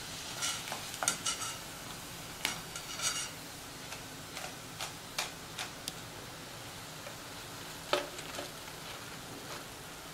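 Cornflour-and-egg battered mushrooms deep-frying in hot oil, a steady sizzle, with a few sharp clicks and scrapes of a metal slotted spoon against the pan as pieces are lifted out.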